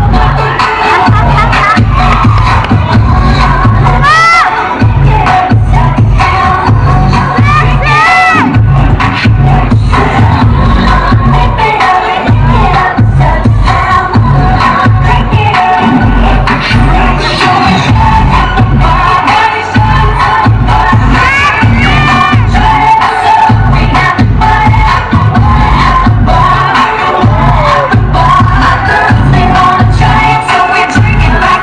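Loud dance music with a steady pulsing bass beat from a PA system, with a crowd cheering and shouting over it and a few sharp rising shouts about four and eight seconds in.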